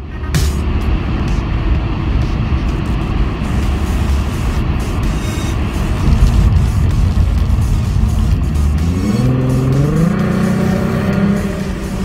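Ford Mustang 3.7 L V6, fitted with an aftermarket intake manifold and a custom cold air intake, running with road noise as heard from inside the cabin while driving. About nine seconds in the engine's pitch rises steadily as it accelerates, then holds.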